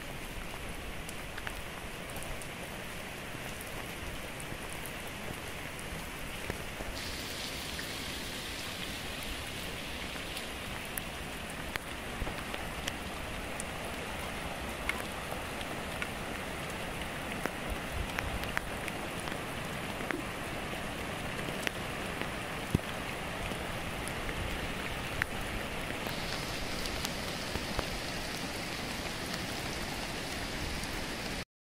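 Steady rain falling, an even hiss sprinkled with sharp individual drop hits.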